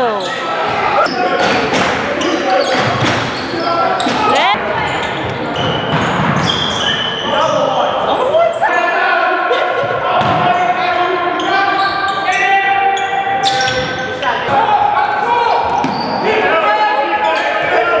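Live basketball game sound in a gymnasium hall: the ball bouncing on the hardwood, with shoes squeaking and players and spectators calling out throughout.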